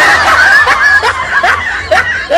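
A person laughing in quick repeated bursts, several a second.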